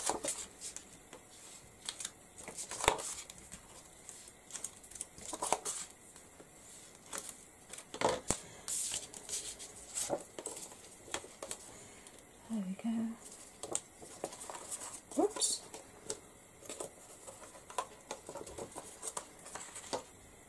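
Card and paper being handled on a tabletop while the backing strips are peeled off double-sided tape and a card layer is laid on and pressed down: scattered sharp taps, rustles and crackles.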